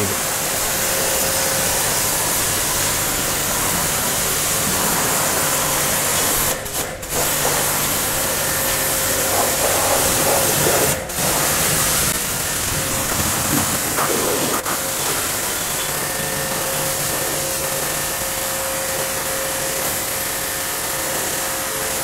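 Eurofine electric high-pressure washer running, its motor-driven pump humming steadily under the hiss of the water jet rinsing foam off a car's rear panel. The noise breaks off briefly twice, about seven and eleven seconds in.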